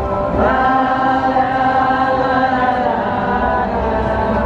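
A crowd of people singing a chant together, the voices swelling into one long held note about half a second in.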